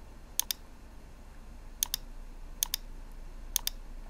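A computer mouse button clicked four times at uneven intervals, each click a quick double tick of press and release, over a faint low hum.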